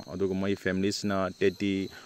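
A person speaking in continuous narration.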